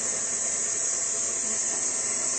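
Stand mixer running steadily, heard as an even high-pitched hiss while it creams butter, sweetener and eggs.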